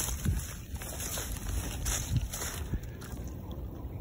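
Low, uneven wind rumble on a phone microphone, with rustling and brushing handling noise as the person crouches down; the rustling dies down after about two and a half seconds.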